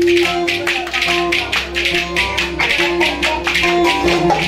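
Ankara oyun havası folk dance music: a saz plays a melody over a held note, with about four sharp clicks a second from wooden spoons (kaşık) clacked in time.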